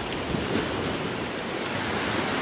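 Small sea waves breaking and washing in the shallows: a steady rush of surf.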